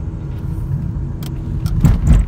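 Steady low rumble of a moving car, engine and road noise heard from inside the cabin, with a few light clicks and a louder knock near the end.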